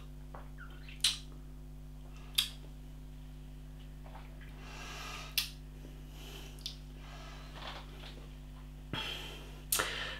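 Wet mouth clicks and lip smacks from a man tasting a mouthful of beer: a sharp click about a second in, another near two and a half seconds, and one after five seconds. Soft breaths between them, over a low steady hum.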